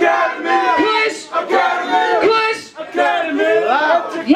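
A woman rapping in a loud, shouted voice into a hand-held microphone, her lines coming in short bursts with brief gaps between them.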